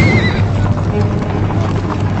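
Cavalry charge: many horses galloping in a dense, continuous clatter of hoofbeats, with a horse whinnying in the first half-second.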